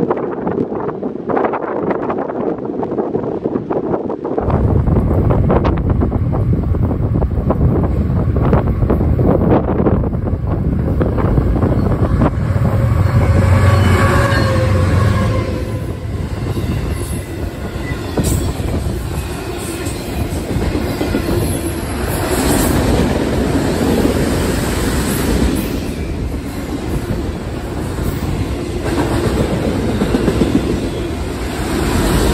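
BNSF freight train of autorack cars rolling past close by. The loud rumble of the arriving locomotives comes in suddenly a few seconds in, followed by steady wheel and rail noise with clickety-clack over the joints.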